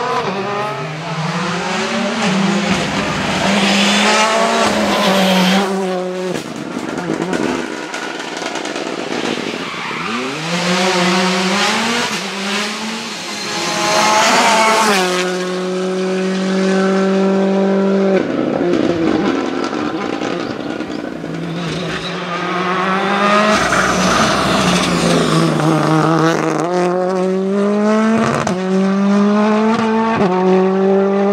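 Rally car engines at full throttle, the engine note climbing through each gear with quick breaks at the upshifts, as a series of cars pass one after another. In the middle the engine holds a steady note for a few seconds.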